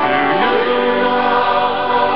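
Church choir of mixed men's and women's voices singing in sustained, held chords.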